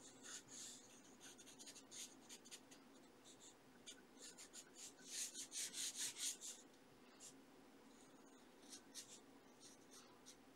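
Faint scratching of a pencil sketching on sketchbook paper, in short irregular strokes, with a denser run of strokes about five to six and a half seconds in.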